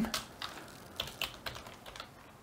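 Computer keyboard typing: a handful of separate keystrokes at an uneven pace, as a file name is entered.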